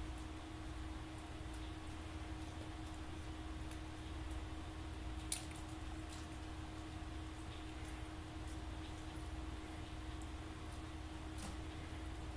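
Small dog nosing and pushing a plastic water bottle used as a treat dispenser, giving faint scattered clicks and crinkles of the plastic, with one sharper click about five seconds in. A steady low hum runs underneath.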